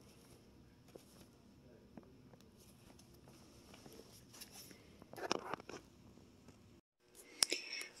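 Cardboard LP record jackets being flipped through by hand: faint sliding and soft taps, with a louder rustle of sleeves about five seconds in.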